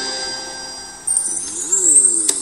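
Radio station jingle music between programmes: sustained bell-like tones fade out over the first second, then a new musical phrase with a rising and falling pitch starts.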